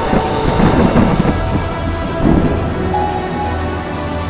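A deep, thunder-like rumble with a rushing swell of noise in the first second, rumbling again briefly a little past two seconds in, over held notes of trailer music.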